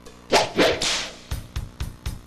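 Live concert music from a stage sound system: a loud, sharp, whip-crack-like hit about a third of a second in, a second hit just after, then a run of quicker drum hits.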